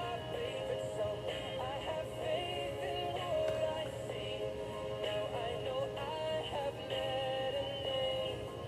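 A song with singing playing on the radio, over a steady low hum.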